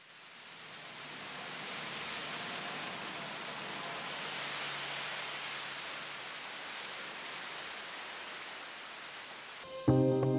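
Rushing hiss of water churned up by a passing canal passenger boat, swelling to its loudest around the middle and slowly fading, over a faint low hum. Music starts just before the end.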